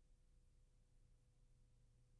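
Near silence: faint steady electrical hum and hiss.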